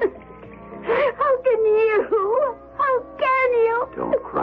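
A woman crying, in long wavering wails and sobs. Music plays more quietly behind her.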